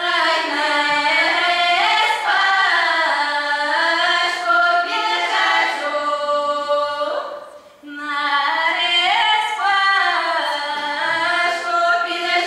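A children's Russian folk vocal ensemble of girls singing a cappella in several voices, in sustained, gliding phrases. The singing breaks off briefly for breath partway through, then carries on.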